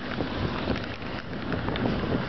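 Steady hiss of wind and rain from a thunderstorm, with wind on the microphone.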